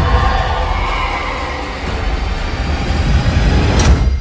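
Movie-trailer score and sound design: a dense, rumbling swell with heavy bass, ending in one sharp hit near the end that rings on.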